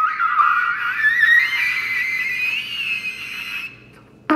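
Pocket trumpet played very high: a thin, whistle-like note that wavers, slides upward about a second in and is held. It stops shortly before the end.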